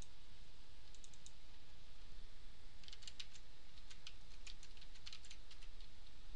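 Computer keyboard typing: a few separate clicks about a second in, then a quick, continuous run of keystrokes from about halfway through.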